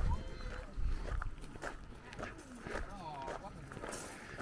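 Footsteps on a gravel path, a series of short crunches about every half second, with faint chatter from other people walking nearby.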